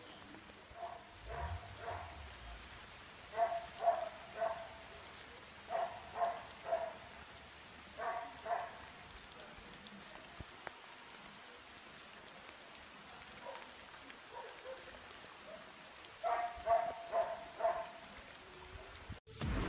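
A dog barking faintly in short bursts of two to four barks, several times, over a steady hiss of light rain.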